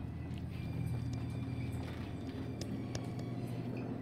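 A steady low hum, with a few faint light taps scattered through it.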